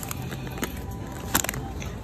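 Groceries being handled in a wire shopping cart: plastic packaging crackling and items shifting, with one sharp knock about one and a half seconds in.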